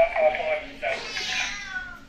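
Domestic cat yowling twice, a short call and then a longer one that falls in pitch: the angry caterwaul of an aggressive cat resisting being put into its carrier.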